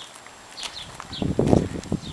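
Footsteps on dry dirt ground: a few irregular steps, the loudest about one and a half seconds in.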